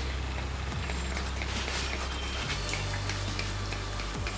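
Faint short spritzes of a pump spray bottle of hair oil being sprayed onto hair, over a steady low hum.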